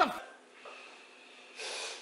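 A meme sound clip: a man's voice saying 'the' with a pitch-bending sweep effect. After a quiet stretch, a short breathy sniff near the end.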